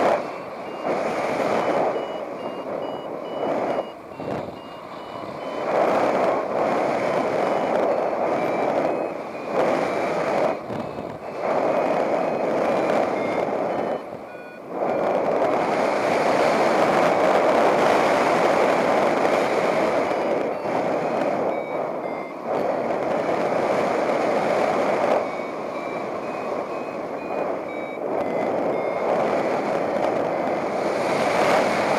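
Paragliding variometer beeping its climb tone, a rapid run of short high beeps that steps up and down in pitch as the lift varies. Under it, air rushing past the pilot and microphone, swelling and easing with the gusts.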